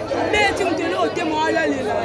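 Crowd of spectators chattering and calling out, many voices overlapping at once.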